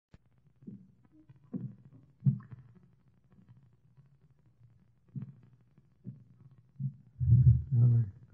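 A voice speaking low and indistinctly in short, scattered bits, with a louder stretch near the end.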